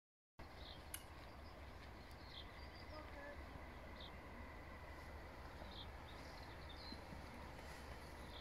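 Quiet countryside: short, scattered bird chirps over a faint, steady low rumble, with one sharp click about a second in.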